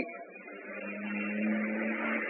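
A low, steady hum with faint background noise in a pause between spoken sentences, growing a little louder about halfway in.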